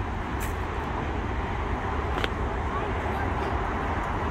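Steady road traffic noise, with a faint click a little after two seconds in.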